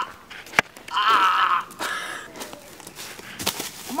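A person's high-pitched wavering squeal, lasting about half a second and starting about a second in, with a fainter echo of it just after. A sharp click comes just before it and a few short scuffs near the end.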